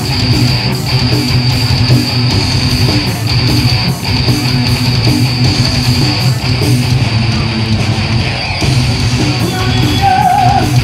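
Heavy metal band playing live: electric guitars, bass guitar and drums in an instrumental passage without vocals, at a steady loud level with a regular beat.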